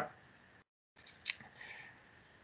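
A single short, sharp click about halfway through, followed by a faint soft rustle, over low microphone noise that a noise gate cuts to dead silence twice.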